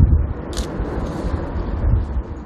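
Outdoor wind buffeting the camera microphone: an uneven low rumble under a steady hiss, with a brief higher rustle about half a second in.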